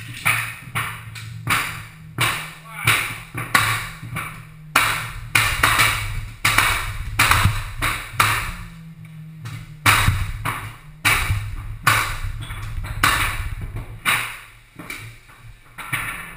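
Repeated mallet blows on pneumatic flooring nailers driving nails into hardwood floorboards. The blows are sharp and ringing, irregular, about one or two a second.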